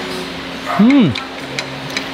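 A woman's short appreciative "mm" hum with her mouth full, rising then falling in pitch, over a steady low background hum.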